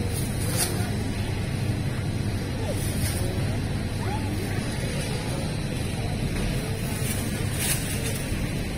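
Steady low store hum with faint background music and distant voices, and a thin plastic produce bag crinkling a few times as apples are put into it.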